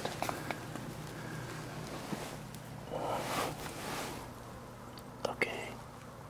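Hushed whispering, with a louder breathy stretch about three seconds in. A few sharp clicks of handling come near the start and again about five seconds in.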